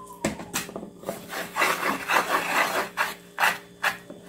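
Silicone spatula stirring and scraping through flour, egg and water in a mixing bowl: rough scraping strokes, a few short ones near the start and end and a dense run through the middle.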